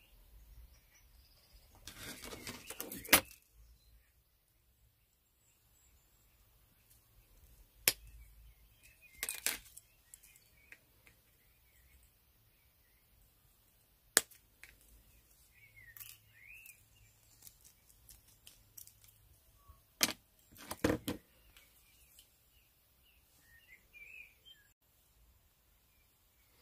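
0.8 mm copper wire ends being snipped with flush cutters: a few sharp, separate snips spread out, with rustling as the wire, pendant and tools are handled between them.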